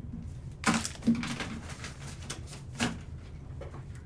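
A stack of glossy Prizm trading cards being handled and slid against each other by hand, giving a few short sharp clicks and swishes, about four in all.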